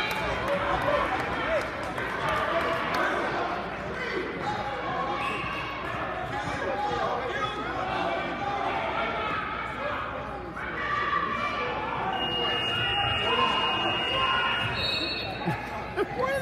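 Crowd chatter in a school gymnasium: many overlapping voices, echoing in the hall, with no single speaker standing out. A thin steady high tone sounds for about three seconds near the end.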